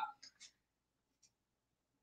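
Near silence between words: the tail of a spoken word fades out at the start, followed by a few faint short ticks, then dead quiet.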